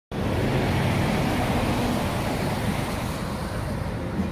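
Steady street traffic noise, a rumbling hiss that starts abruptly.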